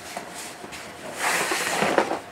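Packaging rustling and tearing as a package is opened by hand: a few small crinkles, then a longer, louder rustle of paper and wrapping about a second in, lasting most of a second.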